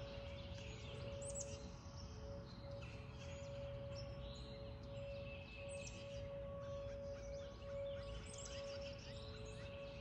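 Distant Whelen outdoor tornado warning sirens sounding a faint steady tone, two pitches held together, for a routine monthly test rather than a real warning. Birds chirp over them.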